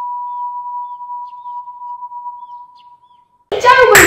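A single steady electronic beep tone at one pitch, with nothing else underneath, slowly fading away over about three seconds. Near the end, sound cuts back in abruptly with a loud burst.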